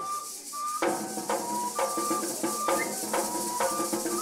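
Traditional cane flute playing a melody of short held notes, with a maraca shaking throughout; about a second in, a drum comes in beating a steady rhythm.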